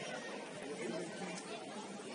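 Faint, indistinct chatter of footballers' voices on the pitch over a steady outdoor background hiss.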